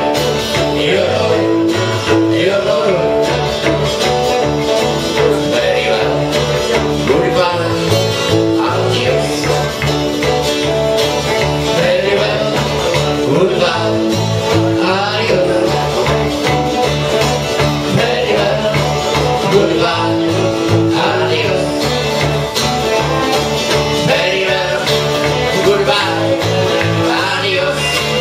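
A live acoustic-style band playing a traditional tune, with a strummed twelve-string guitar over a bass guitar line.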